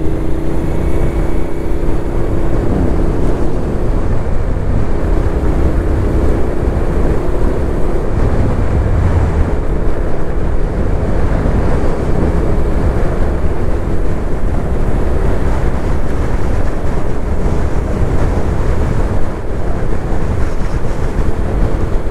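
Suzuki Gladius 400's V-twin engine running at a steady pace on the move, mixed with wind rushing over the microphone.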